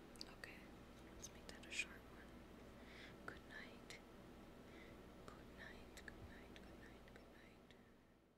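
Soft, faint whispering with small mouth clicks, close to the microphone, trailing off near the end.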